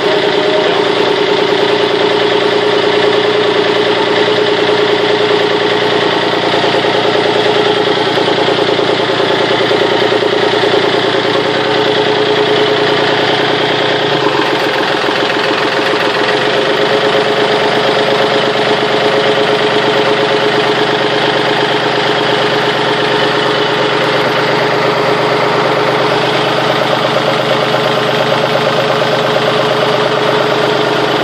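Small inboard marine diesel engine idling steadily, heard close up through the open engine hatch.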